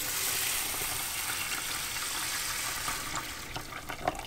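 Tap water poured from a large glass jar into a rice cooker pot onto dry rice and spirulina, a steady splashing pour that thins to a few drips and splashes near the end.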